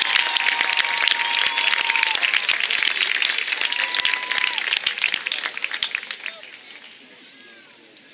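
Audience clapping and cheering, with a few long shouted calls over the applause; the clapping thins out and dies away from about six seconds in.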